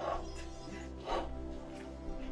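Sword blade scraping mashed avocado across toast on a plate, two short scrapes about a second apart, over background music.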